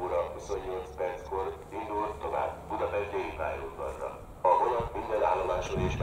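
Railway station public-address announcement in Hungarian, a voice over the platform loudspeakers announcing a train. About four and a half seconds in, a louder low rumble joins underneath.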